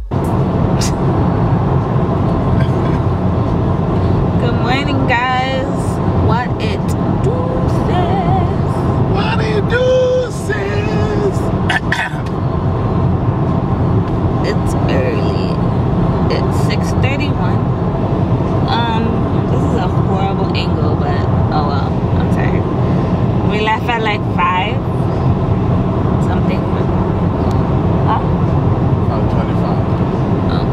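Steady road and engine noise heard from inside the cabin of a car cruising on a highway, a continuous low rumble.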